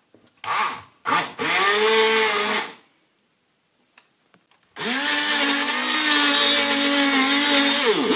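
Hand-held immersion blender puréeing fruit and yogurt in a plastic jug. It gives a short burst, then a run of about a second and a half that speeds up and slows down, and after a pause runs steadily from about halfway on, dipping briefly right at the end.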